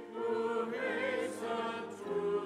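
Church choir singing, several voices with vibrato, a short break between phrases at the start and again at the end.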